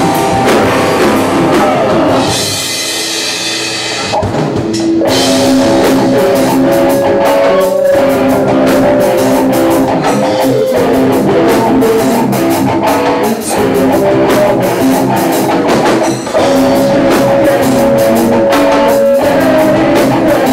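Alternative rock band playing live without vocals: guitars, bass and drum kit. About two seconds in, the band drops back to held guitar notes, and the drums come back in full at around four to five seconds.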